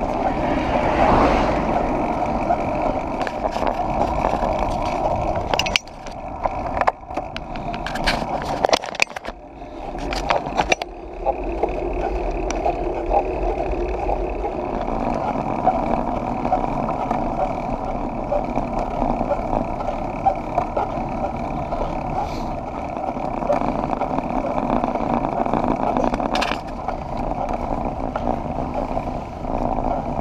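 Riding noise from a camera mounted on a road bike on a climb: a steady rush of wind over the microphone with tyre-on-tarmac rumble. About six to eleven seconds in it is broken by clicks and sudden drop-outs.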